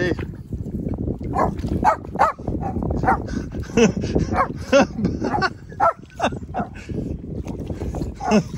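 A dog barking and yelping repeatedly in short, quick bursts.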